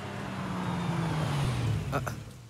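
Heavy rain pouring down, with a car's engine running low beneath it as the car approaches, its tone sagging slightly in pitch. A short sharp knock comes just before the end.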